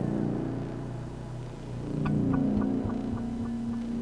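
Low, steady electronic drone from oscillators. About halfway through a sustained note comes in over it, along with a run of short, evenly spaced ticks, about four a second.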